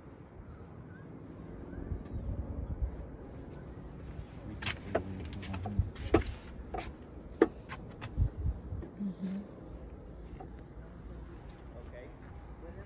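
Low, uneven rumble of wind on the phone's microphone, with a handful of sharp clicks and knocks between about four and eight seconds in.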